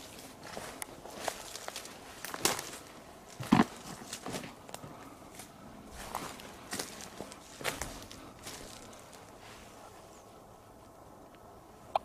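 Footsteps of a person walking over a forest floor, an uneven step every half second to a second, with one loud step about three and a half seconds in. The steps stop after about nine seconds.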